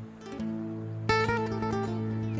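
Acoustic guitar music with plucked notes and a louder strummed run about a second in.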